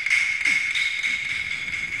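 Struck metal percussion from a Chinese opera band, cymbal-like: a strike at the start rings on with a steady high tone and slowly fades.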